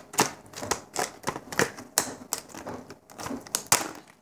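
Scissors cutting through a thin moulded plastic tray: an irregular run of sharp snips and crackles, about three a second.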